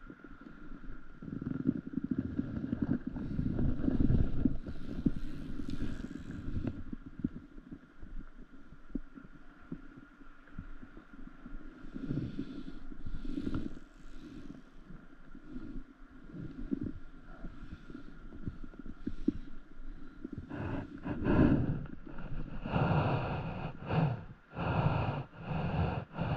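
Wind rumbling on a small action camera's microphone, strongest in the first few seconds. Over the last few seconds comes a run of short handling noises as a spinning fishing reel and rod are worked.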